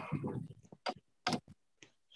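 A few short, faint clicks, three of them about a second in, over quiet room tone.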